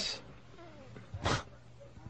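A pause in studio talk with one short breathy vocal sound about a second and a quarter in, over faint background voices.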